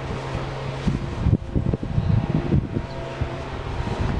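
A steady low mechanical hum, like a running fan motor, with irregular wind rumble on the microphone.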